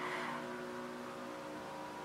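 A faint, steady hum of several held tones over a light hiss, slowly fading.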